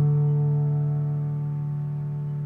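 Soft lullaby piano music: a single held chord rings on and slowly fades away as the piece closes.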